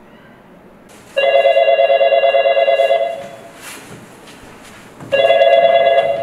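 A telephone rings twice with a warbling electronic ring: a long ring, then a second ring cut short.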